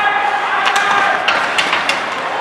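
Ice hockey play in an echoing, near-empty rink: players shouting to each other, with about five sharp clacks of sticks and puck in the second half.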